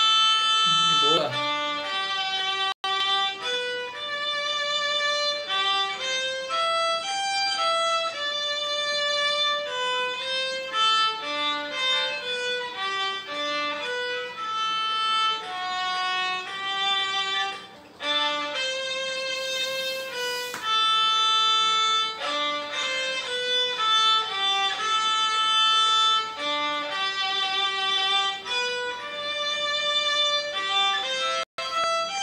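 Solo violin playing a slow melody of held notes, one after another, with hand vibrato on the sustained notes.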